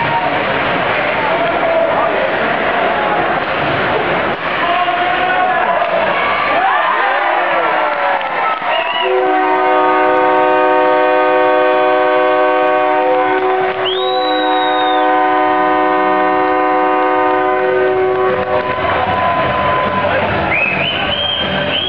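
Ice hockey rink crowd cheering and yelling for a goal. About nine seconds in, the arena goal horn sounds, signalling the goal: a steady multi-tone blast lasting about nine seconds. Midway through it a brief shrill whistle rises over the horn.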